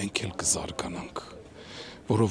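A man speaking Armenian, his voice dropping off about a second in into a short, quiet pause.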